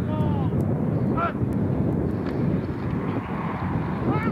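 Shouted calls from a player at the line of scrimmage, one at the start and a short one about a second in, typical of the quarterback's cadence before the snap. They sit over a steady low rumble of wind on the camcorder microphone.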